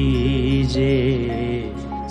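A Hindi devotional bhajan: a voice holding long, wavering sung notes over steady musical accompaniment with a low drone.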